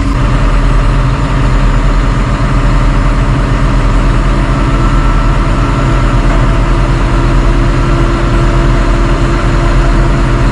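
CAT C9.3 diesel engine in a 140M motor grader idling steadily, heard from inside the cab, running after its fuel injection pump was replaced.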